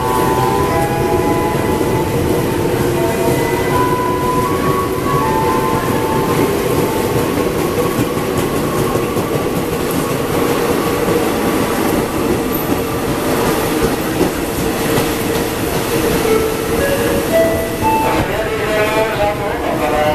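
Former Tokyu 8000 series electric commuter train running past: a loud, steady rumble of its wheels on the rails, with a few thin tones near the start.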